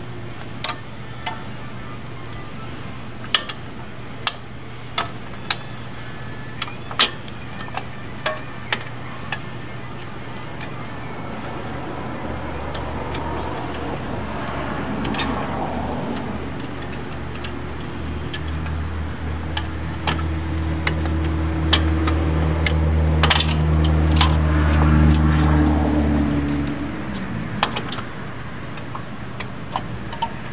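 Small steel brake parts clicking and clinking as drum-brake shoes, return springs and hold-down clips are fitted onto the backing plate by hand, with sharp ticks every second or so. About halfway through, a low steady engine drone builds in the background, grows loudest, then fades away near the end.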